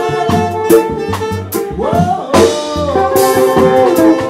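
Live jazz band playing: saxophone lines over bass and drums, with regular cymbal strokes and a pitch slide about two seconds in.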